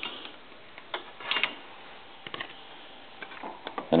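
A few light, sharp plastic clicks and taps from handling a telephone cord connector and a keypad circuit board, scattered through a quiet stretch.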